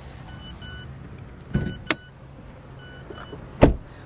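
Mazda 2 interior warning chime beeping in short double tones while the driver's door stands open, with a thunk and a sharp click about one and a half seconds in as the bonnet release is pulled. Near the end the driver's door is shut with a loud thump.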